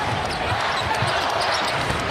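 A basketball being dribbled on a hardwood court, with short low thumps, over the steady noise of an arena crowd.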